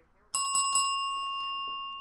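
A small bell struck once about a third of a second in: a single clear ding that rings on and slowly fades.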